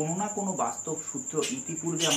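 A man talking, with a continuous high-pitched insect trill running steadily underneath.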